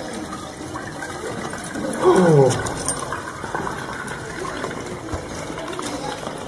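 A man's short vocal sound, falling in pitch, about two seconds in, over a steady background hiss.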